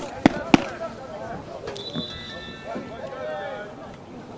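Distant voices of players and spectators calling across an open soccer field, with three sharp knocks in the first second.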